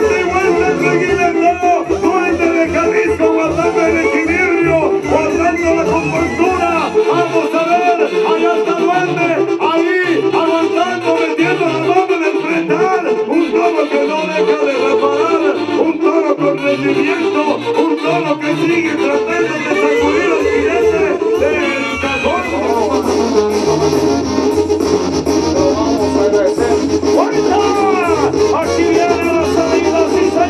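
Mexican banda-style brass band music playing, with brass melody lines over a rhythmic deep bass. The bass drops out for a stretch in the middle and then comes back.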